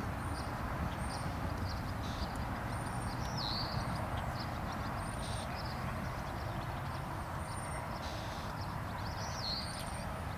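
Wild birds chirping, short high calls repeated again and again, over a steady low background rumble.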